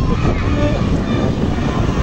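Motorcycle running slowly, with a steady low rumble and wind on the microphone, and voices of the marching crowd of children and adults around it.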